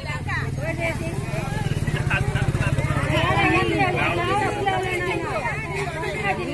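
A crowd of people talking and calling out over one another, with a low steady drone underneath that swells and pulses quickly around the middle.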